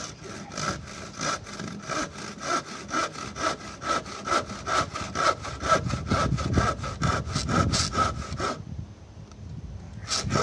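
Long hand saw cutting into a hewn timber beam, starting the angled kerf for a notch, with quick, even back-and-forth strokes, three or four a second. The strokes stop shortly before the end.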